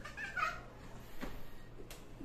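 A short, high-pitched, wavering cry in the first half-second, like a meow, followed by two faint clicks.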